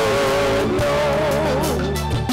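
A woman singing through a microphone over amplified instrumental accompaniment, her voice holding long, wavering notes above steady bass notes.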